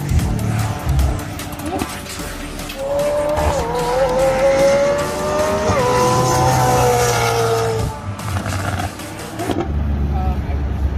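A supercar's engine accelerating hard down a race-track straight: its note climbs, drops sharply at two upshifts, then sinks and fades as the car passes by.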